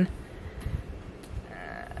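A low rumble, then about one and a half seconds in a woman's long, drawn-out "uh".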